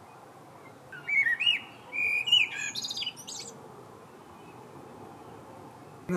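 A songbird singing one short phrase of swooping, whistled notes starting about a second in and lasting about two seconds, over a faint steady background hiss.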